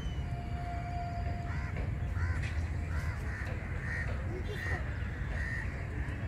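Birds calling outdoors, a run of about four short repeated calls in the second half, over a steady low rumble.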